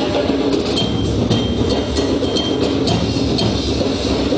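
Percussion ensemble playing a continuous rhythm on bass drums and hand drums, with repeated sharp, high strikes on top, some ringing briefly like a bell.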